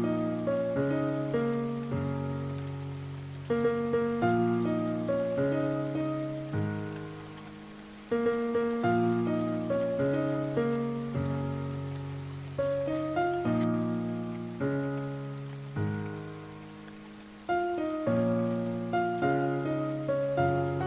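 Solo piano playing slow chords and single notes, each struck every second or two and left to fade, over a steady bed of rain falling on a surface.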